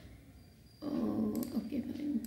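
A woman's voice making an unworded, drawn-out murmur, starting about a second in after a quiet moment.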